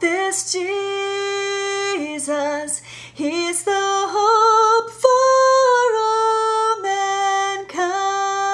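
A single female soprano voice singing a choral part: long held notes with vibrato, in several phrases with brief breaks between them.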